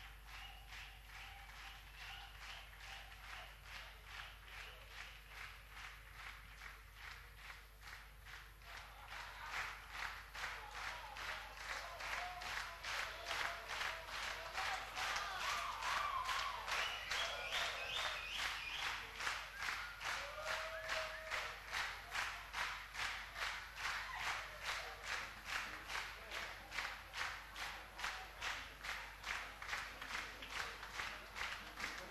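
A concert audience clapping in unison, about two claps a second, growing louder about nine seconds in, with a few calls from the crowd in the middle. This is rhythmic applause calling for an encore.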